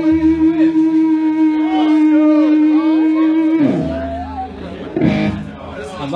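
Electric guitar through an amp holding one sustained, ringing note, which slides down in pitch about three and a half seconds in, followed by a sharp strum about five seconds in.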